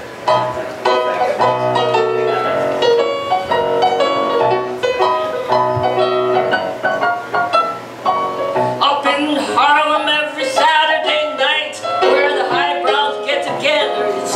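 Live piano playing a song's introduction. About two-thirds of the way in, a singer begins singing over the piano.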